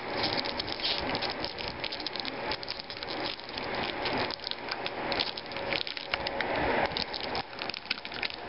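Foil wrapper of a Pokémon trading-card booster pack crinkling and crackling in irregular bursts as fingers pick and pull at its edge, struggling to tear it open.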